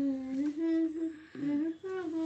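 A voice humming a slow tune in long held notes, broken by short pauses.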